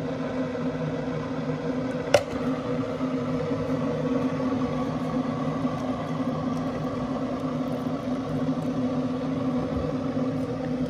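A steady machine hum with a few fixed low tones, and one sharp click about two seconds in.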